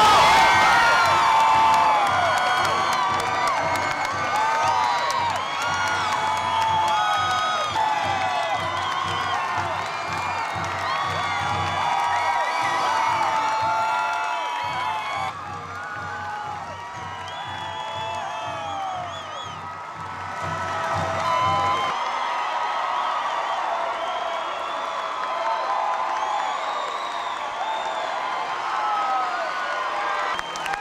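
Large crowd cheering, whooping and shouting over a band playing with a steady low drum beat. The drum beat stops about two-thirds of the way in, while the cheering and clapping carry on.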